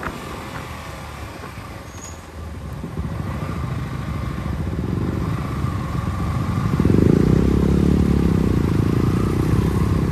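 Motorcycle engines running at low speed as the bikes slow almost to a stop; the engine sound builds and is loudest from about seven seconds in.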